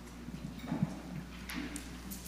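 Footsteps and a few soft, irregular knocks as a man in hard-soled shoes walks across a carpeted stage to his place, the loudest about a second in.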